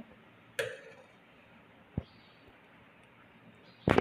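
Steel ladle knocking against a steel pot and a glass serving bowl while chicken curry is dished out: a clink about half a second in, a soft thud near two seconds, and a louder knock just before the end.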